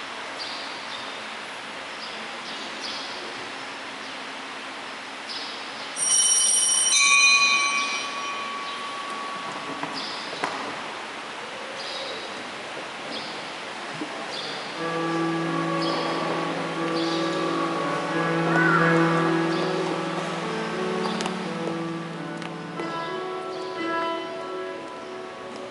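Quiet church room tone, broken about six seconds in by a short, bright, bell-like ringing. Around fifteen seconds in, music with long held notes begins: the communion hymn.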